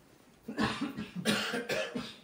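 A person coughing: a run of several harsh coughs in quick succession, starting about half a second in.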